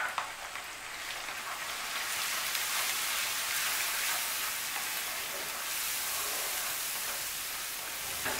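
Sliced onions with ginger-cumin paste and turmeric sizzling in hot oil in a non-stick kadai while being stirred with a wooden spatula. The steady hiss grows louder about two seconds in and then holds.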